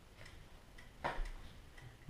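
Faint, steady ticking, about two ticks a second, with a short rustle of handled paper about a second in.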